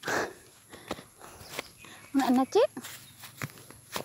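Footsteps walking on a dirt and grass footpath, heard as scattered short scuffs and taps. A brief voice-like sound rises in pitch a little after halfway.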